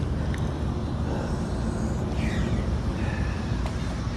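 Steady low outdoor background rumble, with a few faint high chirps about halfway through.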